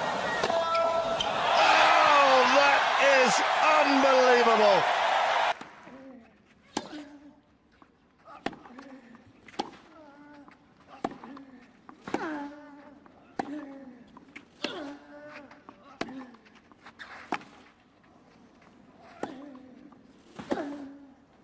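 Stadium crowd cheering and shouting loudly, cut off abruptly about five seconds in. Then a tennis rally on a clay court: sharp racket-on-ball strikes roughly every second and a half, most with a player's short grunt.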